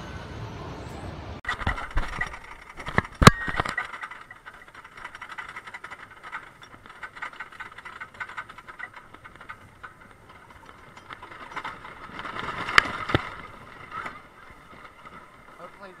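A wooden roller coaster train climbing its chain lift, heard from the back car: an irregular clattering rattle, with a sharp knock about three seconds in and another near the end.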